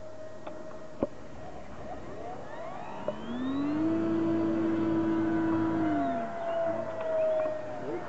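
Electric ducted fan of a FliteTest Viggen RC jet on a 4S battery, whining in flight. About three seconds in the whine climbs in pitch and gets louder, holds, then drops away after about six seconds.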